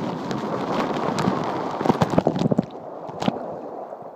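Water rushing and splashing around a phone in a waterproof case on a water slide, with sharp splashes between about two and three seconds in. After that the sound drops and goes dull.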